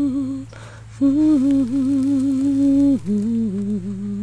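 A person humming a slow tune in long held notes, pausing briefly about half a second in and then moving down to lower notes about three seconds in.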